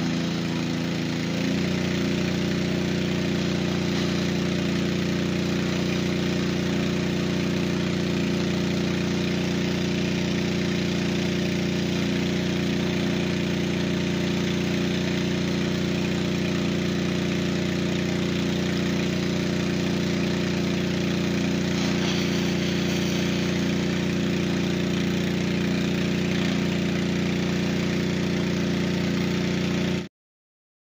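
Engine-driven water pump running steadily while pushing a water jet from a hose, with a steady hiss over the engine note. The note shifts slightly about a second and a half in, then holds even.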